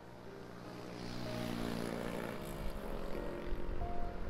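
A passing motor vehicle's engine, swelling as it approaches and fading away after about three seconds.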